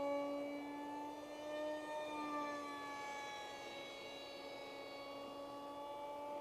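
Faint, steady whine of a radio-controlled F-16XL's brushless electric motor (2212/6, 2700 Kv) and 6x3 propeller in flight, the pitch drifting slightly up and then sagging down over the few seconds.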